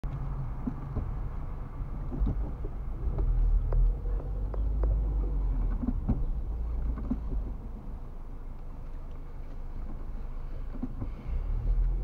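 Low, steady engine and road rumble of a car heard from inside its cabin as it rolls slowly, with scattered small clicks and knocks.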